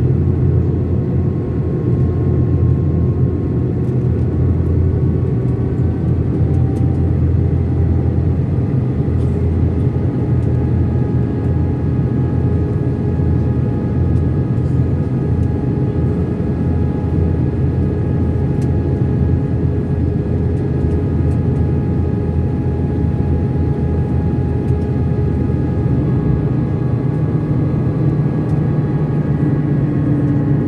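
Airbus A319 cabin noise heard from a window seat over the wing, in descent: a steady drone of engines and airflow with several faint engine tones slowly drifting in pitch. Near the end the low drone grows a little louder and a new, lower tone comes in.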